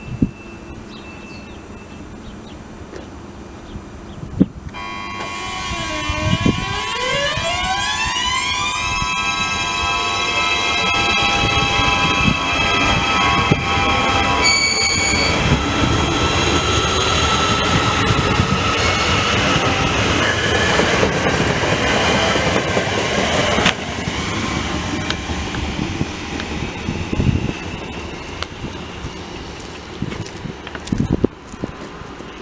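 TrainOSE passenger train pulling away from the platform: a whine from its drive rises steadily in pitch over a few seconds, then holds. A brief high beep sounds about halfway through, while the wheels rumble and clatter past, fading near the end.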